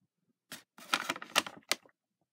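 A paper Happy Meal bag rustling and crinkling as it is handled and turned over: a short crackle about half a second in, then a longer run of crackles with a few sharp snaps.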